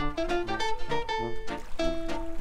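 Background music: a light, quick melody of short plucked-string notes over a simple bass line.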